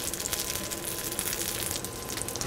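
Halved onions sizzling cut side down in a teaspoon of hot vegetable oil in a pan over high heat: a steady, soft hiss with fine crackles.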